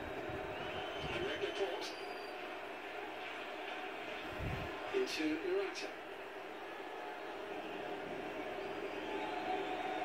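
Television football broadcast: a steady stadium crowd hum, with a commentator's voice briefly about five seconds in and a few light clicks.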